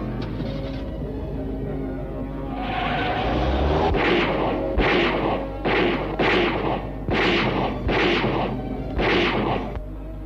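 Dramatic film music under a run of loud gunshots, about one a second, starting some three seconds in and stopping just before the end.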